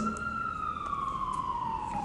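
Faint siren wail: one long tone gliding slowly downward in pitch.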